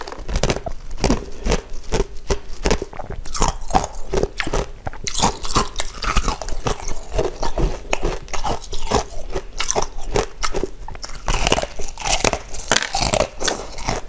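Close-miked crunching and chewing of frozen ice coated in black sesame: a dense, continuous run of crisp crunches.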